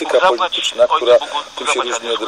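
Speech only: a voice talking in Polish, with no other sound standing out.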